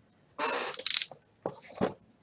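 Foil wrapper of a 1996 Select Certified baseball card pack crinkling as it is handled and pulled open. A crackly rustle lasts under a second, and a shorter crinkle follows near the end.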